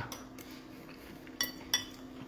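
Two light clinks of a metal fork against a ceramic bowl, about a third of a second apart, each with a brief ring.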